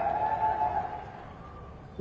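A man's amplified voice trailing off through a public-address system in a pause between phrases of a speech. A single held tone rings on from his last word and fades over about a second, leaving faint, even background noise.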